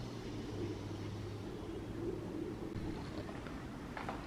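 Faint steady background noise with a low hum that fades out about a second and a half in.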